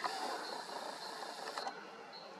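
A video camera's zoom motor whirring for about a second and a half as the lens zooms out, starting and stopping with a click.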